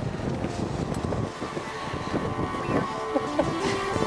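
Wind rumbling on the microphone, with indistinct voices of people nearby breaking through now and then.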